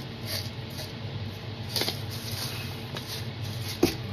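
Light rustles and taps of supplies being handled on a work table, with one sharp click near the end, over a steady low hum.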